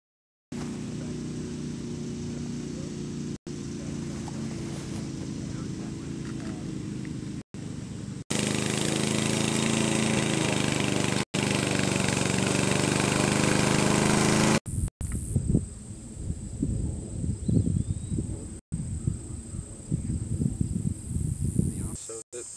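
Walk-behind gasoline lawn mower engine running steadily while cutting grass, louder from about eight seconds in and broken by several brief dropouts. From about fifteen seconds in the engine is gone, leaving irregular low rumbles of wind on the microphone and a steady high chirring of insects.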